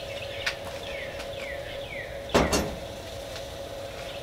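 One loud, sharp knock with a brief ring about halfway through, over a steady low hum. Three short falling bird chirps come in the first half.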